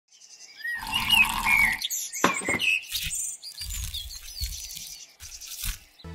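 Intro sound effects made of short chirps, squeaks and sliding whistles, starting a moment in, with a few clicks and soft low thumps in the second half.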